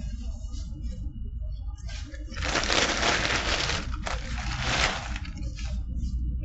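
Paper sandwich wrapper crinkling and rustling as it is handled, in two close stretches from a couple of seconds in until near the end.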